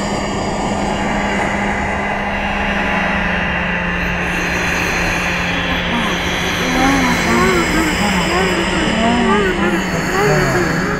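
Algorithmic electroacoustic music synthesized in SuperCollider: a dense, rushing noise texture over a steady low drone. About two-thirds of the way in, short rising-and-falling pitch glides begin to repeat over it.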